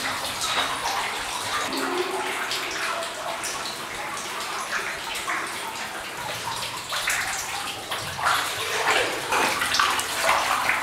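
Water sloshing and splashing around legs wading thigh-deep through a flooded mine tunnel, in an uneven run of surges that grows busier and louder near the end.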